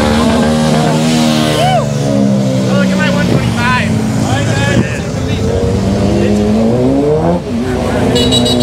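Motorcycle engines running and revving as the bikes ride past, one engine climbing in pitch near the end and then letting off; people's voices shouting over them.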